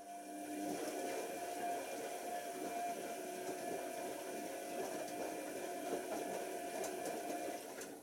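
Tricity Bendix AW1053 front-loading washing machine tumbling its drum in the wash: motor running with a steady hum and wet laundry sloshing in the water. It starts at once and stops shortly before the end, into a pause between tumbles.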